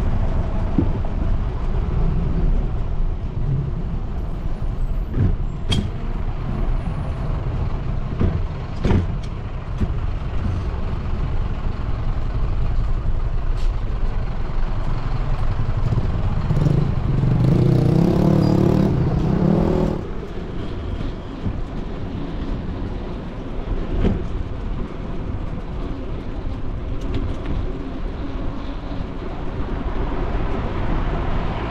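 Street traffic noise with a steady low rumble. A motor vehicle's engine passes close from about seventeen to twenty seconds in, the loudest sound, with a few short knocks scattered through.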